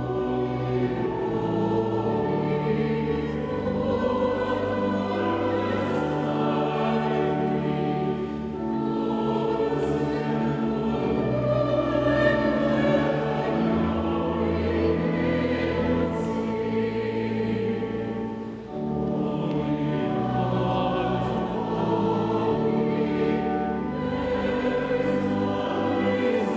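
Church choir singing a hymn with sustained, held notes.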